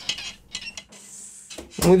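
Light clinks and knocks of a hand iron being worked over a metal ironing board, with a brief high hiss about halfway through; a voice calls out loudly near the end.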